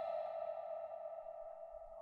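A single sustained synthesized musical tone, the kind of dramatic sting laid under reaction shots in a TV serial, slowly fading away.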